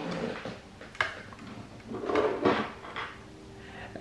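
Handling noise as a wristwatch on a leather strap is picked up off a tabletop: a sharp click about a second in, then soft rubbing and shuffling.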